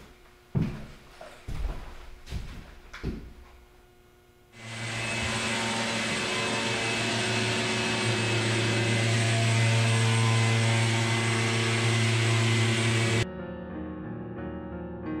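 A few scattered knocks and handling clicks, then a wet/dry shop vacuum comes in abruptly and runs steadily with a low motor hum for about eight seconds before cutting off suddenly. Soft piano music follows near the end.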